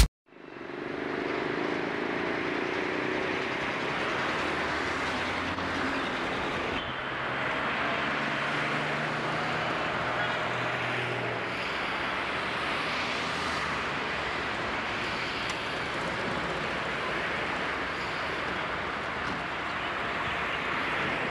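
Steady street noise of passing traffic picked up by a camcorder's built-in microphone, fading in at the start, with a low engine hum now and then.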